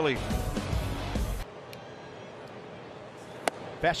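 Ballpark crowd noise with a heavy low rumble that cuts off abruptly about a second and a half in, giving way to quieter stadium ambience. Near the end a single sharp pop is heard as a fastball smacks into the catcher's mitt.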